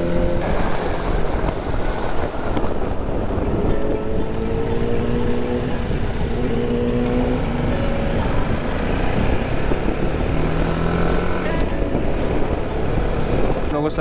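Motorcycle engine running under way, with heavy wind rush on the bike-mounted microphone. The engine note climbs and changes pitch a few times as the throttle and gears change.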